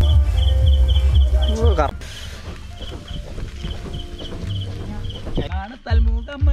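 Crickets chirping steadily, about three short high chirps a second. A heavy low rumble sits under them and cuts off suddenly about two seconds in.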